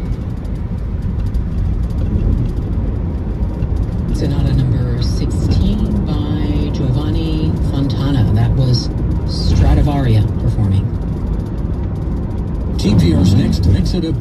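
Steady low road and engine noise inside a moving car, with a voice from the car radio talking from about four seconds in and again near the end.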